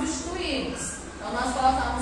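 A woman's voice speaking; speech only.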